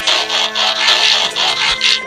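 Synthesized robot-transformation sound effect of the cartoon kind: a quick run of whirring mechanical pulses, about five in two seconds, as a tank changes into a robot, with music underneath.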